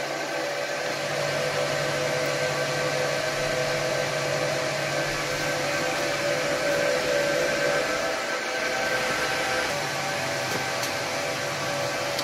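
Cooling fans of a running Huawei 1288H v5 1U rack server, a steady whir with several steady whining tones over it.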